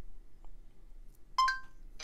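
M-Line smartwatch giving a short, rising two-note electronic beep about one and a half seconds in, acknowledging a spoken voice command just before its synthetic voice answers.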